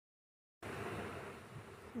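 Silence, then a buzzing hiss starts suddenly a little over half a second in and fades over the next second.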